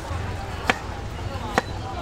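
Knife chopping through a lime onto a wooden cutting board: two sharp strikes a little under a second apart.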